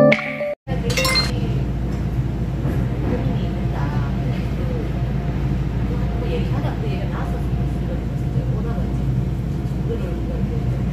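Steady low rumble of a passenger train running, heard from inside the carriage, with faint voices of passengers. Piano music cuts off in the first half-second, and there is a brief clink about a second in.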